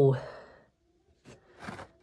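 A man's voice trailing off in a breathy sigh at the start, then near quiet with a couple of faint, brief rustles near the end.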